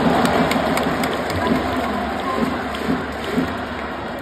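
Baseball crowd clapping and cheering as a player is announced in the starting lineup. The applause is loudest at the start and slowly dies down.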